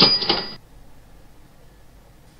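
PowerPoint's built-in 'Cash Register' sound effect playing once, a burst of about half a second topped by a bright bell ring, as a Disappear animation previews.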